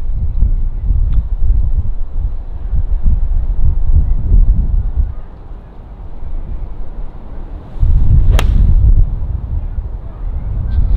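Wind buffeting the microphone throughout, and about eight seconds in a single sharp crack of a golf iron striking the ball off the fairway turf.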